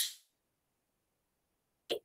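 Near silence between a woman's words: a word trails off at the very start, and her speech resumes just before the end.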